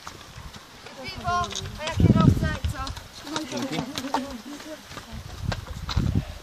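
People's voices calling out and talking, with a high-pitched call about a second in and a louder shout around two seconds, over the footfalls of runners on a dirt track.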